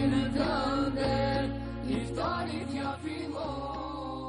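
Closing bars of an Albanian ilahi, an Islamic devotional song: a sung line with melismatic turns over a steady low drone. It softens near the end as the song winds down.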